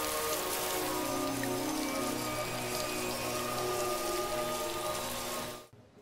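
Steady heavy rain falling, with soft music of long held notes underneath; both cut off sharply near the end.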